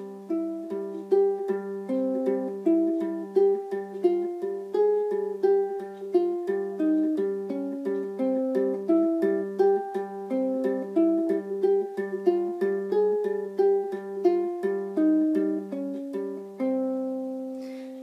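Ukulele strung with a low G, played fingerstyle: a flamenco-style melody picked note by note, with the thumb plucking an added string after each melody note, so a repeated low note sounds between the changing notes. It ends on a held chord near the end.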